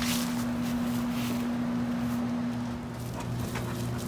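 A steady low electric hum from a nearby machine, with a few soft rustles in the first second or so.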